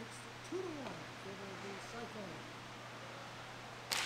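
Faint, distant players' voices calling out across an indoor roller hockey rink over a steady low hum. A single sharp clack comes near the end as sticks meet at the face-off.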